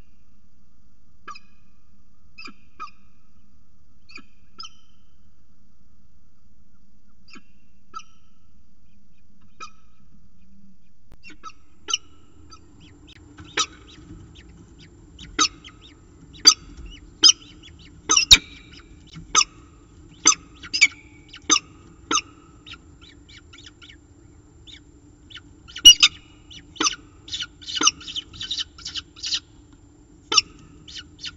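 Peregrine falcon calls. Short, sharp calls come faintly and sparsely at first. From about twelve seconds in they are loud and come in quick succession, crowding together near the end. A steady low hum sits under them.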